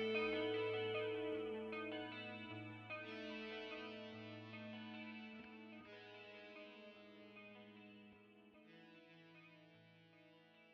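Closing bars of a progressive metal song: electric guitar chords through effects ring out over a held low note, a new chord struck about three, six and nine seconds in, the whole fading steadily away.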